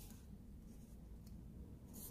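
Near silence, with faint scratchy rubbing of a crocheted yarn cap against a polystyrene foam egg as it is handled and fitted over it.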